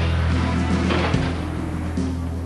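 Background music with sustained low bass notes; the bass changes about a second in.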